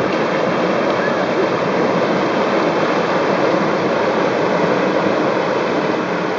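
Whitewater river rapids rushing loudly and steadily, recorded close to the water's surface.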